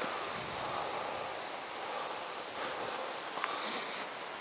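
Steady outdoor background hiss, like light wind or distant ambience, with a couple of faint soft ticks near the end.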